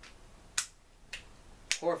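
Four small, sharp clicks about half a second apart from the metal and plastic parts of a Tokyo Marui Glock 18C gas blowback airsoft pistol as it is handled.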